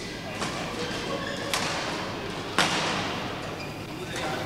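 Sharp hits of badminton play, most likely racket on shuttle, echoing in a large hall: a light one near the start, another about a second and a half in, and the loudest about two and a half seconds in.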